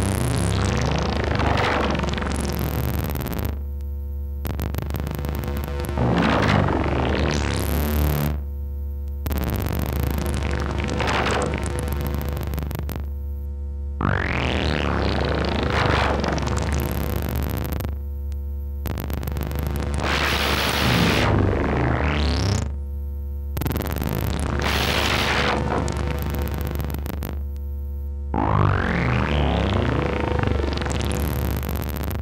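Erica Synths Pico System III modular synthesizer patch playing an experimental drone: a steady low hum underneath, with buzzy tones whose overtones sweep up and down and change every few seconds. A hissy noise passage comes in about two-thirds of the way through.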